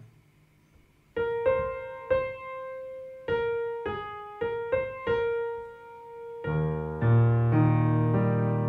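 Piano playing slow single melody notes after about a second of quiet; about six and a half seconds in, low left-hand arpeggio notes join and the sound grows fuller and louder.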